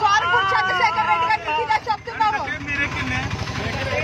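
A woman crying and speaking in distress, with another woman's voice alongside, over the low steady rumble of the vehicle they are riding in.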